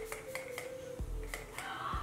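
Several quick spritzes from a small pump-spray face mist bottle, each a short sharp hiss, over faint background music.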